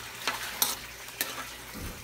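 Metal spoon stirring pork in braising sauce in a metal wok, with three sharp clinks of the spoon against the pan over a faint steady sizzle of the simmering sauce.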